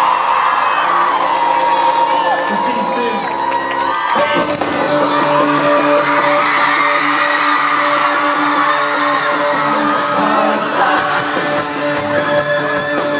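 A concert crowd cheering and whooping, then about four seconds in a live rock band starts the song's intro with sustained notes, the crowd still shouting over it.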